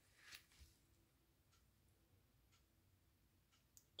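Near silence: room tone, with one faint brief rustle within the first second.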